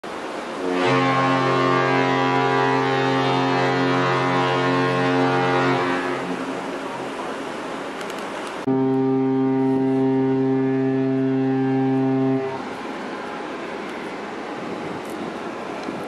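Carnival Pride cruise ship's fog horn sounding two long, deep, steady blasts. The first lasts about five seconds and the second about four, starting suddenly a few seconds after the first ends. It is sounded as a fog signal in fog.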